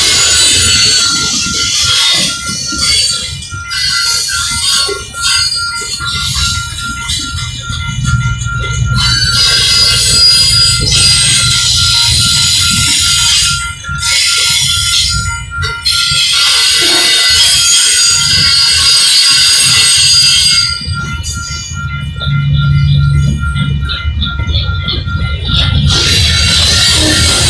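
Freight cars rolling past at close range: a loud rumble of wheels on rail with a high hiss that thins out briefly a few times. A grade-crossing bell rings steadily with evenly repeating strikes.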